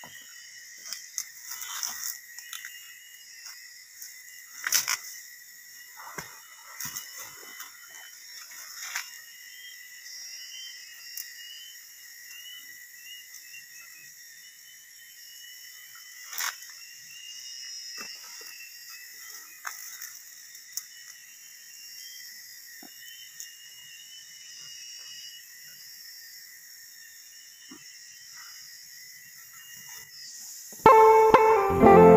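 Rustling and scattered knocks from footsteps in leaf litter and a heavy sack being handled, over a steady high insect drone and intermittent bird chirps.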